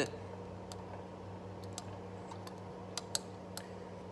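A few light, scattered clicks and ticks of small metal parts as a small-engine carburetor's throttle linkage is handled, over a steady low hum.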